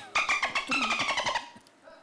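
A woman laughing hard, in a quick run of high-pitched pulses that fades away about a second and a half in.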